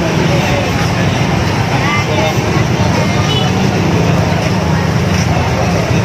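Outdoor market ambience: people's voices talking and motorbike traffic running, a steady mix with no single standout event.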